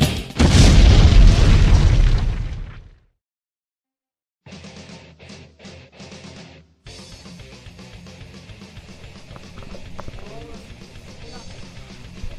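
Heavy metal intro music ends on a loud, deep boom that fades out over about two and a half seconds. After a short silence there is only faint, low background noise.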